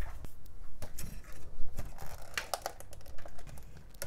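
Hands handling a computer motherboard and its power supply on a workbench: a scatter of small clicks, taps and knocks of circuit board and metal case against the table, the sharpest about a second and a half in.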